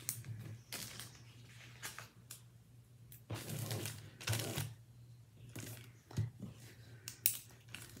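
Clear plastic bag crinkling and rustling as jewelry is slipped into it and the bag is handled, in irregular short rustles.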